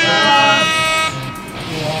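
A brassy, horn-like sound effect that sweeps up in pitch and then holds one steady tone for about a second, followed by a voice.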